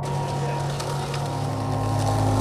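Skateboard wheels rolling on pavement, a steady rolling noise that cuts in suddenly, under background music.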